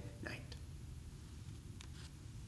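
Quiet room tone with a steady low hum, after a man's voice trails off at the very start; a faint click near the end.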